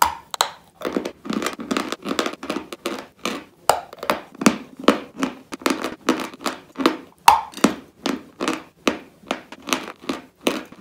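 Close-miked crunching of a dry white dessert block: a bite right at the start, then steady chewing at about two to three crunches a second.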